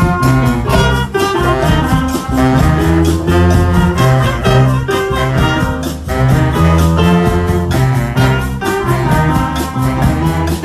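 Middle school jazz band playing a swing tune: saxophones and brass over a steady, even beat.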